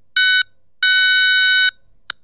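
Electronic beep tones: a short beep, then a longer beep of about a second, each a steady chord of several high tones.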